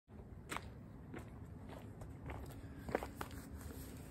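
Faint footsteps of a person in sneakers walking on a paved sidewalk: about six steps, a little over half a second apart.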